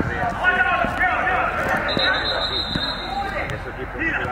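High-pitched shouts and calls from young soccer players and onlookers during play, with the ball thudding off feet now and then.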